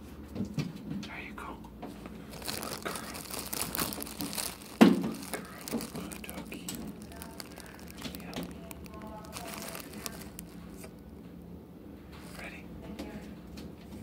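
Close rustling and crinkling handling noise at the phone's microphone, with one sharp knock about five seconds in, the loudest sound.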